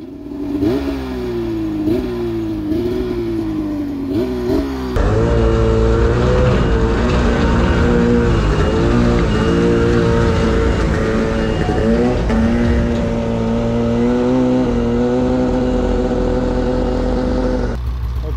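Arctic Cat Crossfire two-stroke snowmobile engine revving up and down over and over, smoke pouring from the exhaust, for about five seconds. Then, after an abrupt cut, a snowmobile engine runs louder and steadier at high revs, dipping briefly a few times.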